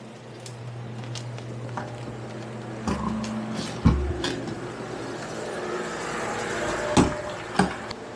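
Steady hum of factory machinery and air handling, with scattered footsteps and knocks from someone walking across the floor. A heavy thump comes about four seconds in, and the background noise grows slowly louder toward the end.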